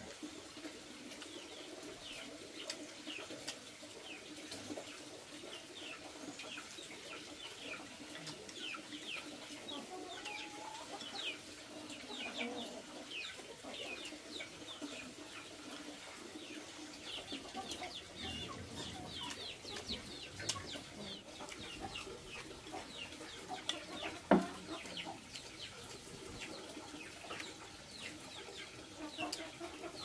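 Birds chirping: many short, quick, falling chirps throughout, over a faint steady low hum. A single sharp knock about 24 seconds in.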